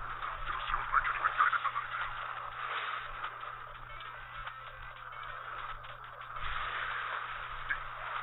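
Anime episode soundtrack heard thin and muffled, with nothing above the mid-highs: a character speaking and background sound effects, over a steady low hum.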